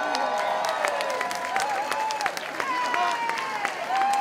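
Audience applauding and cheering, dense clapping with held shouts and whoops over it.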